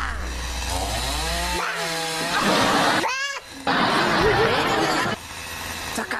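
Chainsaw cutting tree branches, its pitch rising and falling as the throttle is opened and eased, with stretches of rougher cutting noise.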